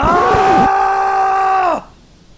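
A man's loud, long held cry on one steady pitch, cut off abruptly near the end.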